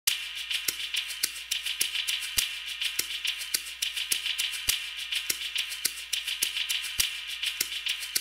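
Quiet, sparse intro of an instrumental trap beat: evenly spaced clicking percussion, about two ticks a second, over a steady hiss and low hum, with no melody yet.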